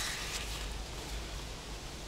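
Quiet outdoor background noise, a steady hiss over a low rumble, with faint rustling as a hand searches a sequined pouch for a paper word card.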